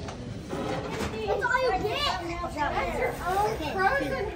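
Young children's high-pitched voices talking and exclaiming, starting about a second in.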